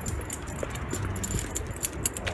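Dog's metal chain collar and leash clip jingling in quick, irregular little clinks as the dog walks at heel, over a low rumble of footsteps and handheld camera movement.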